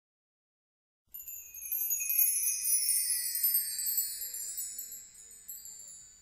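Chimes ringing at the start of a recorded song: a shimmering run of high notes that begins about a second in, steps downward in pitch and slowly dies away.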